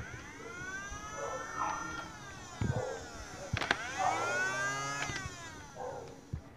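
Battery-powered flywheel motors of a Nerf Flyte CS-10 blaster revved twice: each time a whine rises in pitch as the flywheels spin up, then falls away as they coast down. A click marks the start of the second rev.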